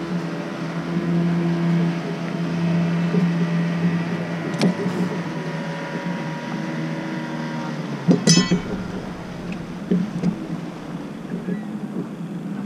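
Steady hum of a boat motor running, with a single sharp tick about halfway through and a short clatter of clinks about eight seconds in.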